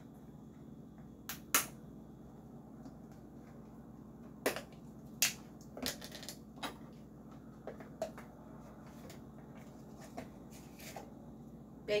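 Scattered light clicks and taps, about a dozen spread irregularly over several seconds, from a measuring spoon and a cardboard baking soda box being handled as a teaspoon of baking soda is measured out.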